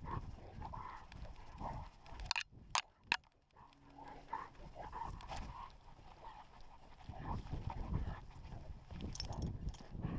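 A working police dog running across grass, heard from a camera strapped to its own back: its panting and breathing over the thud of its paws and the rubbing of the mount. A few sharp clicks come between two and three seconds in, followed by a brief lull.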